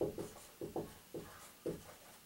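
Dry-erase marker writing on a whiteboard: a quick series of short strokes, about four a second, as letters are written out.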